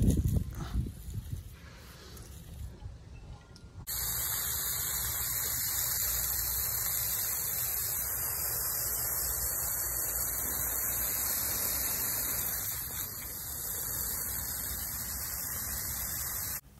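Faint rustling for the first few seconds, then a steady hiss starts abruptly about four seconds in and holds at an even level.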